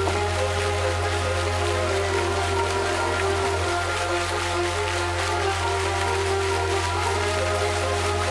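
Music with long, held notes plays for a fountain show, over the steady hiss and patter of the fountain's water jets splashing.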